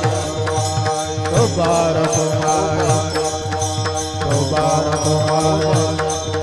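Varkari kirtan music: many small hand cymbals (taal) struck together in a quick, steady beat, over a drum and a held melody.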